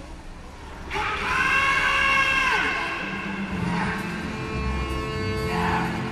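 A long, high held note that bends downward at its end, then live band music starting about three seconds in with a low bass line and sustained tones.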